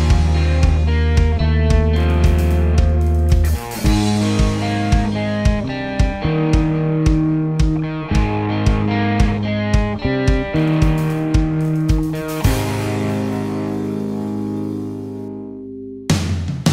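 Instrumental passage of a rock song, with no vocals: guitar chords over a steady drum beat, shifting to new chords about three and a half seconds in. Near the end the drums stop and a last chord rings out and fades.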